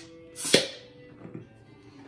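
Crown cap prised off a bottle of Guinness stout with a bottle opener: one short pop and a hiss of escaping gas about half a second in, fading quickly.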